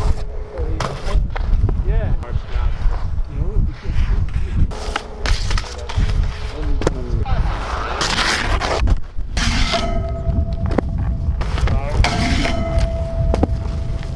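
Skis scraping and clattering on snow and a metal rail, with several sharp knocks and thuds, over a heavy rumble of wind on the microphone. Brief shouts of voices come through.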